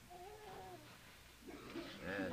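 A faint, drawn-out vocal call from someone in the audience, then clapping and voices starting to rise near the end.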